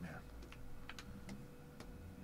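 A few faint, irregular clicks from a computer's controls being worked, about five over two seconds, with a faint steady hum underneath.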